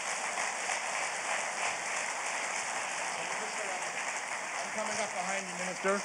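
Audience applauding steadily, with a faint voice talking near the end.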